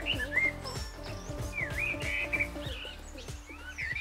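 Birds chirping and tweeting in short, quick calls over soft background music.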